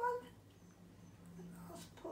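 A puppy whining: the end of a short, rising whine right at the start, then a faint, low, drawn-out whimper in the second half.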